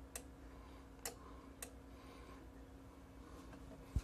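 Relays inside a 30 V 2 A bench power supply clicking as the voltage is turned up, switching between the transformer's windings: three light clicks in the first second and a half, then a sharper click at the very end.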